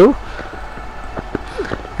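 Low background noise of the open-air ground between commentary lines: a steady low hum with a few faint taps.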